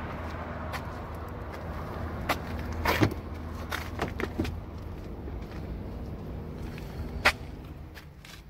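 A Ford's driver door being opened and someone climbing in: a sharp latch click about three seconds in, then several lighter knocks and handling noises, with one more sharp knock near the end. A steady low rumble sits underneath.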